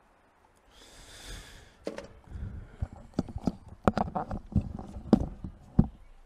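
A short hiss, then a run of about a dozen irregular sharp knocks and clicks with low thuds between them, loud and close.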